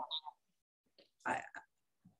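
Speech only: a woman's hesitant pause mid-sentence, with one short spoken "I" a little over a second in and near quiet around it.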